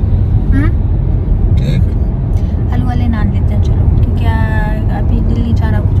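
Steady low rumble of road and engine noise inside a moving car's cabin, with a few brief voice sounds over it.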